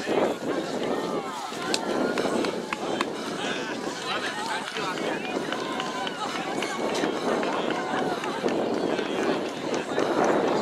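Crowd of spectators shouting and cheering on runners at a cross-country finish, many voices overlapping.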